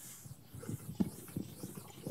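Chalkboard eraser wiped in strokes across a chalkboard: a run of irregular dull knocks and rubs, the loudest about a second in.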